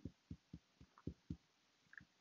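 Fingertips tapping on the collarbone during EFT tapping: faint, soft low thumps, about four a second.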